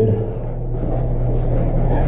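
A steady low mechanical hum with a rumble under it, unchanging throughout.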